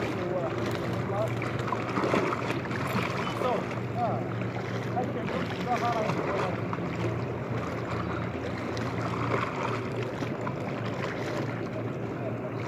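Steady low drone of a boat motor under wind on the microphone and water washing against harbour rocks, with faint voices in the first few seconds.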